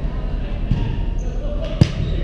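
Volleyball game on a hardwood gym floor: one sharp smack of a ball near the end, a softer knock about two-thirds of a second in, and brief high squeaks from sneakers on the court, over players' voices in the hall.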